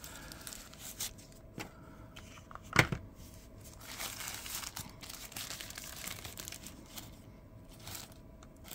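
Thin plastic wrap crinkling and tearing as it is peeled off a wireless mic's charging case, with a sharp click a little under three seconds in.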